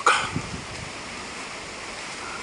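Steady outdoor ambient noise, a soft even hiss with no distinct events.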